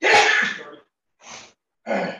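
A man sneezing once, loudly, followed by two shorter, quieter breathy sounds about a second apart.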